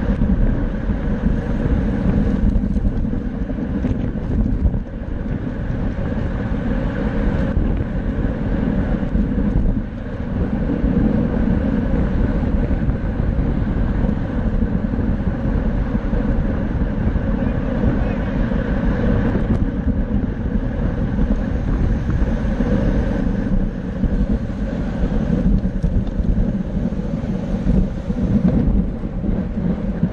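Steady wind rushing over a bicycle-mounted camera's microphone at racing speed, about 29 mph, mixed with road and tyre noise, continuous and loud throughout.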